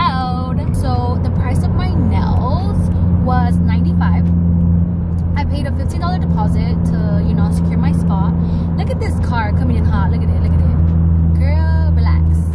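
A woman talking inside a moving car's cabin, over the steady low drone of the engine and road noise.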